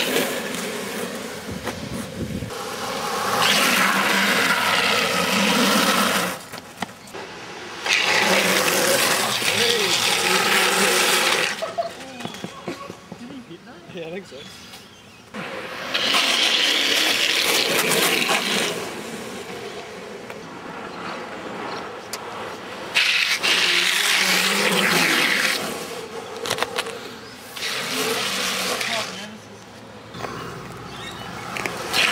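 Longboard wheels sliding sideways across asphalt in toeside drifts, a series of hissing slides of a few seconds each with quieter gaps between.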